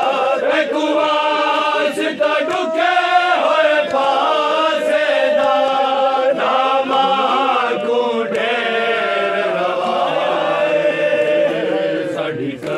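A group of men chanting a Shia noha (lament) together into a microphone, unaccompanied, in long held, wavering notes.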